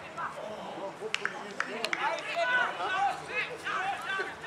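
Several voices shouting and calling out, overlapping and strongest in the second half, with a few sharp knocks between one and two seconds in.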